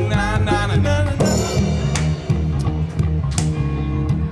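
Live rock band playing an instrumental passage between vocal lines. Guitar lead with wavering, bent notes over bass and a drum kit, with a cymbal crash about a second in.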